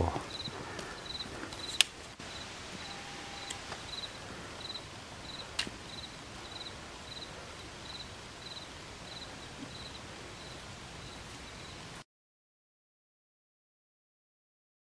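An insect chirping steadily, short high-pitched pulses about twice a second, over quiet open-air ambience, with two sharp clicks; the sound cuts to silence near the end.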